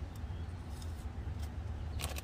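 A steady low background rumble, with a few faint light clicks from playing cards being handled.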